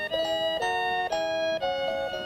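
A simple tune from a vintage-style novelty TV gift, set playing by turning its knob: a melody of sustained notes, about two a second.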